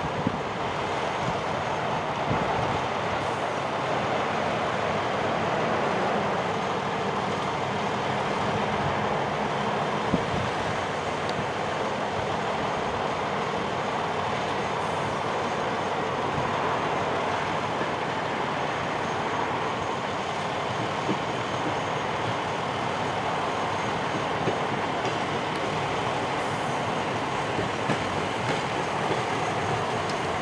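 Diesel-hydraulic locomotives Dv15 and Dv16 running steadily as they move a short passenger train slowly through the rail yard, with a few light clicks over the steady engine noise.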